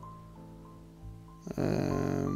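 A man's drawn-out hesitant "eh", held steady on one pitch, starting about one and a half seconds in; before it only faint steady tones are heard.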